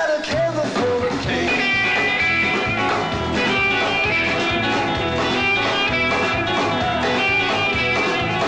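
Live rock and roll band playing an instrumental break: a lead electric guitar solo over bass and drums with a steady beat.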